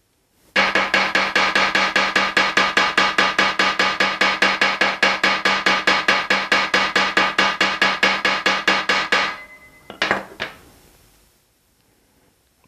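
Ball-peen hammer tapping a copper strip in a fast, even run of about six light strikes a second, with a metallic ring under the strikes, stopping after about nine seconds; a couple of separate knocks follow. The taps work-harden the copper, leaving it rigid.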